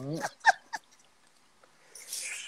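A brief laugh, a short rising voiced sound followed by two quick catches of breath, in the first second.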